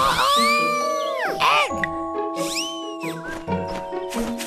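A cartoon character's wordless, excited voice sounds that sweep up and down in pitch, two or three of them, over children's background music that settles into long held notes about halfway through.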